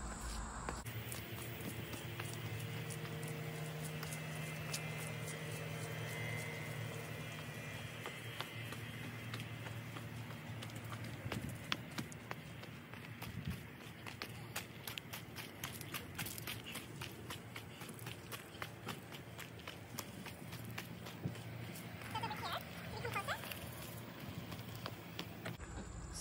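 Footsteps crunching on gravel, a quick run of short steps through the second half.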